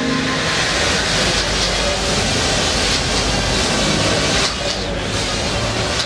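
Several Parrot Bebop 2 quadcopters flying together, their propellers making a steady hiss with a faint hum.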